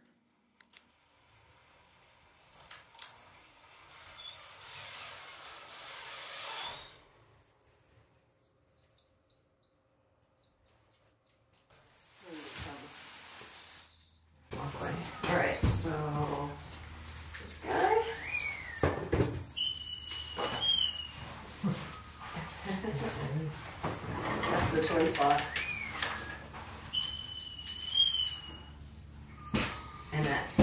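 Small aviary finches chirping and calling, including two short held high calls with a wavering end about two-thirds of the way through and near the end. People talk quietly over the birds in the second half.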